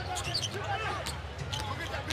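Game sound from an NBA arena: a basketball dribbled on the hardwood court in short sharp strikes.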